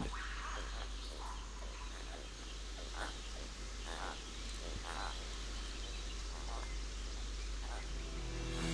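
Forest ambience: a steady background hiss with a handful of faint, short animal calls, about one a second from around three seconds in.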